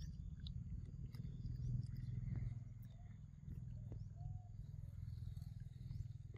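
A continuous low rumble close to the microphone with a rapid flutter, loudest about two seconds in, with a few faint clicks and two short faint chirps in the middle.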